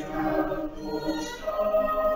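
Church choir singing sustained notes, moving to a new chord about one and a half seconds in.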